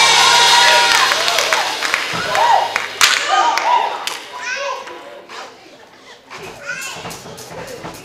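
Church congregation calling out in scattered, wordless shouts and exclamations in response to the sermon, with a few claps and one sharp thud about three seconds in; the voices die down through the second half. Music underneath fades out in the first two seconds.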